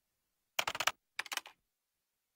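Computer keyboard typing: two short bursts of rapid key clicks, the first about half a second in and the second just after a second.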